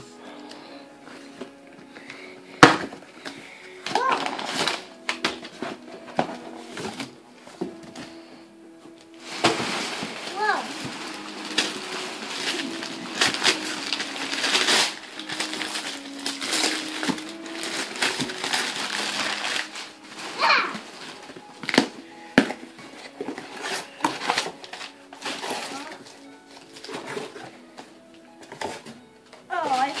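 Wrapping paper tearing and rustling and a cardboard box being handled, with a run of sustained tearing and crinkling from about nine to twenty seconds in and a sharp crack near three seconds in. Background music with held notes plays throughout.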